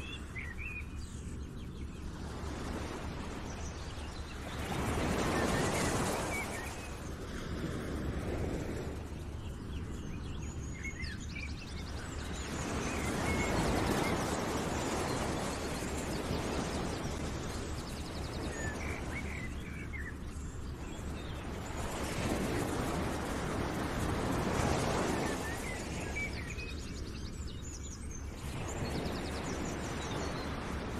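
Outdoor nature ambience: a rushing noise that swells and fades every eight to ten seconds, with scattered bird chirps over it.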